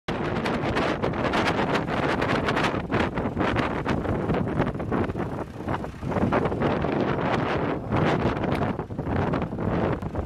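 Wind buffeting the microphone in irregular gusts over a tractor's diesel engine running and river water rushing.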